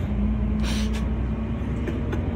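Steady low rumble of a moving passenger vehicle heard from inside its cabin, with a steady low hum and a brief hiss just under a second in.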